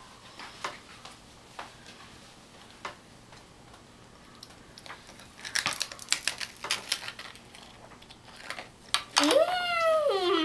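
Scattered light clicks and knocks, with a quick cluster of them just past the middle, followed near the end by a child's high-pitched voice.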